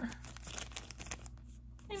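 Clear plastic packaging crinkling quietly in short, scattered rustles as it is handled.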